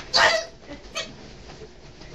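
A single short, high-pitched yelp, followed by a faint click about a second in.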